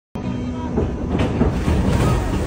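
Theme-park ride boat travelling along its water channel: a steady low rumble of the boat and water, with a single knock about a second in.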